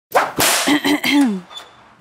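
Whip-crack sound effect on an animated title sting: a sharp crack, then a few short pitched notes, the last sliding down in pitch.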